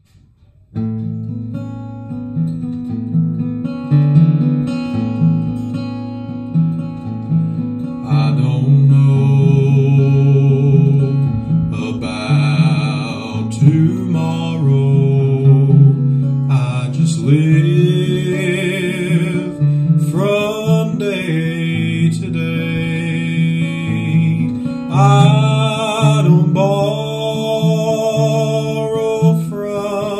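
Acoustic guitar playing chords as the introduction to a song, starting about a second in, with a higher melodic line joining about eight seconds in.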